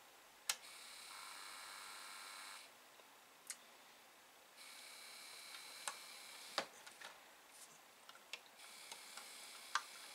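Atari 1050 floppy disk drive powered up with its case open: a click as it switches on, then a faint, high buzzing whine from the drive's motor that runs for two to three seconds, stops, and starts again twice, with scattered clicks. The owner takes the sound for a stuck or broken motor, since the head is not stepping back to track zero as it should.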